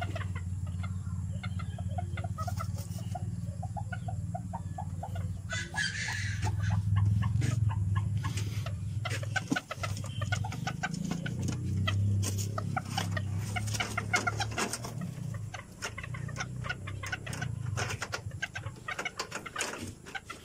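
Serama bantam chickens clucking in a series of short calls, with a brief louder, higher call about six seconds in, over a steady low hum.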